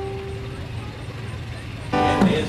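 A single held violin note, bowed, dies away within the first half second, leaving a steady low outdoor rumble.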